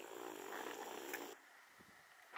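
Faint, steady rustling noise with a small click near its end; it cuts off abruptly just over a second in, leaving near silence.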